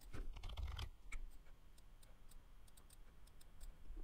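Faint computer keyboard typing: a quick run of keystrokes in the first second or so, then a few scattered clicks.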